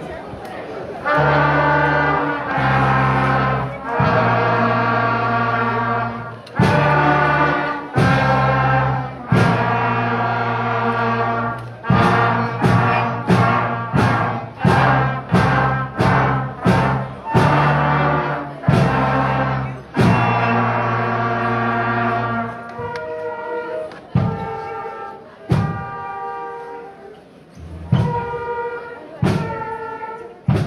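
Elementary-school band of flutes and brass playing a simple tune note by note, each note starting with a sharp hit, in a steady slow pulse. The playing thins out and grows quieter from a little past twenty seconds in.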